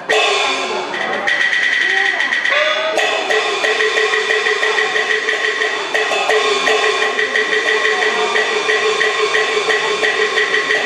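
Taiwanese opera (gezaixi) stage accompaniment music: sustained melodic instruments over percussion, with a steady quick beat from about three seconds in.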